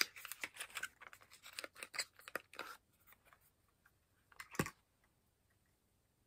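Small cardboard product carton being opened by hand: a quick run of scratchy clicks and rustles of card for about three seconds, then one louder rustle a little past halfway as the tube is pulled out.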